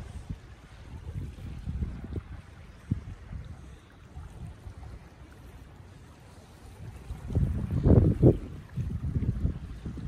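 Wind buffeting the microphone in uneven gusts, a low rumble that is strongest about eight seconds in.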